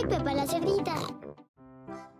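A cartoon piglet's child voice speaking and oinking over bright children's music. It dies away about halfway through, and a few held music notes follow.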